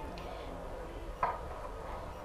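A low, steady background hum with a brief faint sound about a second in.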